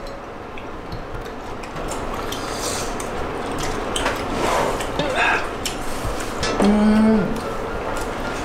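Metal spoons clinking and scraping against porcelain bowls as people eat stew, in scattered light clinks.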